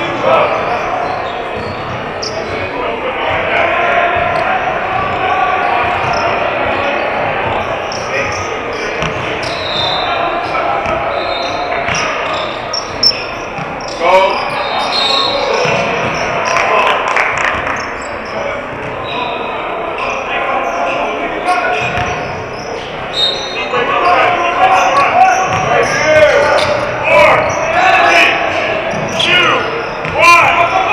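Basketball bouncing on a hardwood gym floor during a game, with the voices of players and onlookers echoing in the large hall. A few short, sharp squeaks come through, mostly about halfway and again near the end.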